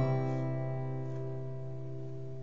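The closing chord of an acoustic guitar ringing out after a strum and slowly fading away.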